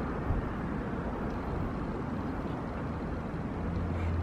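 Steady low rumble and hiss of background noise around a parked car, with a low hum growing stronger near the end.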